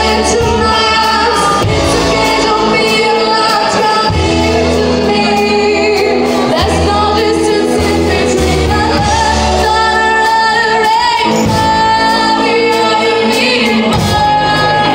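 Live rockabilly band playing, with a woman singing lead into a vintage-style microphone over steady bass and drums. Her held notes carry vibrato about ten seconds in and again near the end.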